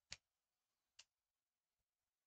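Near silence broken by two faint sharp clicks, about a second apart.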